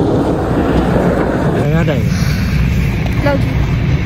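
The diesel engine of a Volvo coach bus running close by: a loud, steady low rumble.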